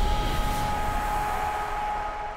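Tail of a TV channel's logo sting: a few held synthesised tones over a noisy wash, slowly fading away.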